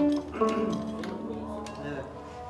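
Kanun (Turkish plucked zither) played with finger picks: a note struck right at the start and another short phrase about half a second in, the strings ringing and fading, with a voice faintly underneath.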